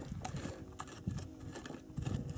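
Small hand digging tool scraping gravelly soil, a few faint scattered clicks and scratches of grit and pebbles.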